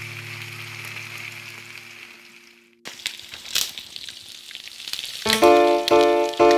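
Pork pieces and garlic sizzling in oil in a wok, a steady hiss that fades out a little over two seconds in. After a short break there are a few sharp clicks, and music with plucked notes starts near the end.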